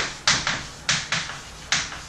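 Chalk writing on a chalkboard: a quick run of sharp taps and short scrapes, one for each stroke of the letters, about three a second.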